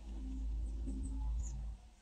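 Quiet outdoor ambience: a low steady rumble of wind on the microphone, with a few faint high chirps a little under a second in and again near one and a half seconds.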